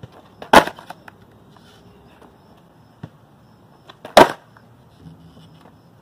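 A skateboard slaps down hard onto concrete twice, about three and a half seconds apart, as stationary finger flips from a tail stop are landed. Lighter clicks of the board come in between.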